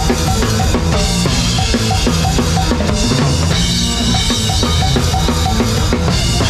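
Live gypsy-punk band playing on stage, with the drum kit up front: kick, snare and cymbals hit hard in a steady driving beat over the rest of the band.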